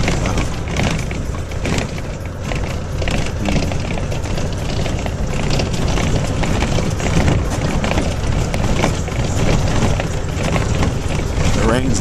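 Inside a bus driving on a rough dirt road: a steady low rumble of engine and road noise, with constant rattling and knocks as the bus bumps along.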